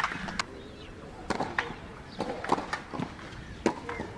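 Tennis rally on a clay court: a series of sharp racket hits on the ball and ball bounces, about one a second.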